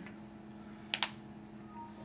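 Two quick spritzes from a small pump spray bottle of picaridin insect repellent, close together about a second in, over a faint steady hum.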